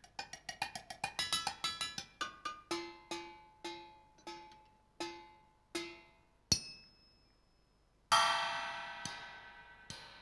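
Live solo metal percussion: quick struck notes that slow to a ringing note about every half second. Then one sharp crack, a short pause, and a loud cymbal strike near the end, left ringing.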